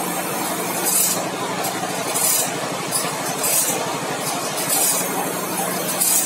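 Automatic band saw blade sharpening machine grinding the teeth of a sawmill band saw blade: a steady motor hum with a short, high grinding hiss each time the abrasive wheel drops into a tooth, repeating about every two-thirds of a second.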